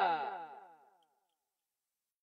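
A man's last spoken word drawn out and dropping steadily in pitch as it fades away, like a tape slowing down, gone within the first second.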